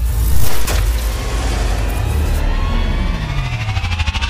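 Electronic cinematic sound effects: a heavy, steady low rumble with a loud hit about half a second in, then a falling sweep and a rising sweep near the end, mixed with music.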